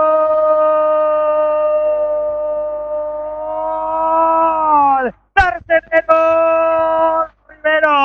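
Radio football commentator's drawn-out goal cry: one long shouted vowel held at a steady high pitch for about five seconds, sliding down and cutting off, then a few short shouted syllables and a second held cry.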